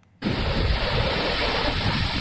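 Storm surf breaking against a concrete breakwater and its tetrapods: a dense, steady rush of waves and spray that cuts in abruptly about a quarter second in.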